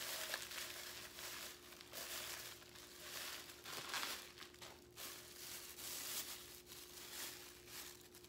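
Plastic bubble wrap crinkling and rustling in irregular bursts as it is handled and unwrapped from an item.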